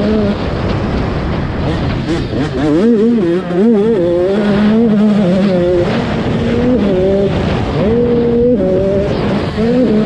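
85cc two-stroke motocross bike engine being ridden hard, its revs climbing and dropping again and again with throttle and gear changes, with a short wavering stretch of revs a few seconds in.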